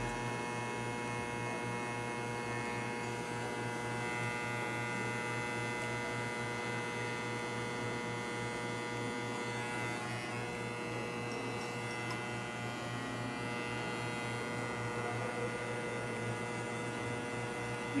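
Electromagnetic (vibrator-motor) hair clipper running with a steady low buzz. It is being checked for an intermittent fault, cutting out when its cord or wiring moves, and here it keeps running without dropping out.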